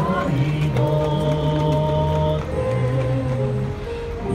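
A small group singing a hymn, slow and sustained, each note held for a second or two.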